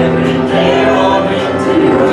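A live church worship band and singers performing a gospel hymn: several voices singing together over guitars and keyboard.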